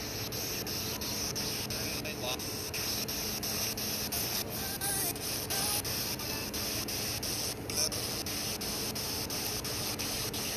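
Steady hiss, strongest in the high range, with faint voices talking in the background.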